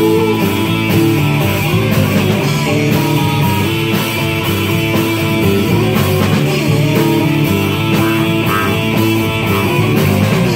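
Live rock music from two electric guitars played through amplifiers, loud and continuous.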